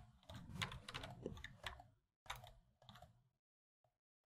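Faint computer keyboard and mouse clicks in several short runs: a busy run of clicks at first, then two shorter runs with gaps between.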